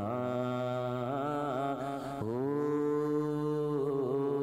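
A solo male voice sings Punjabi Sufi kalam into a microphone, drawing out wavering, ornamented notes over a steady low drone. About two seconds in he starts one long held note that lasts until near the end.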